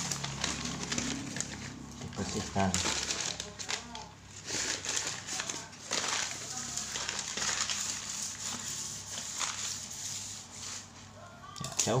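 Newspaper rustling and crinkling in irregular spurts as it is handled, folded and crumpled by hand.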